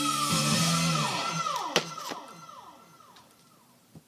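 A heavy metal record playing on a turntable, its guitar ringing out in a string of notes that each slide down in pitch, fading away as the track ends. A couple of sharp clicks come about two seconds in, and another right at the end.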